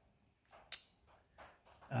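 A quiet pause holding one short, sharp click about three-quarters of a second in, with a few faint soft rustles around it.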